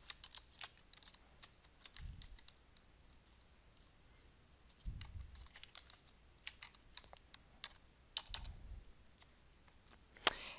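Faint typing on a computer keyboard: scattered keystrokes in short, irregular runs.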